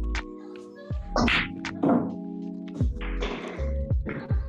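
A pool shot: the cue strikes the cue ball, then balls knock together and against the table, several sharp knocks with the loudest about two seconds in. Steady background music plays underneath.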